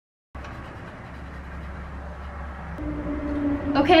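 Silence that cuts in abruptly, about a third of a second in, to a steady low hum with faint hiss: room or recording background noise. A woman's voice starts near the end.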